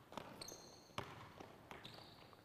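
Faint basketball bounces on a court, several separate thuds, with short high-pitched sneaker squeaks about half a second in and again near the end.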